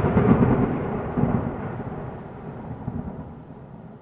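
Thunder-like rumbling and crackling magic sound effect for a genie coming out of a rubbed lamp, loud at first and fading steadily; a very strange sound.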